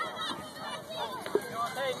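Several young children's high-pitched voices shouting and calling out over one another, short rising and falling cries overlapping throughout.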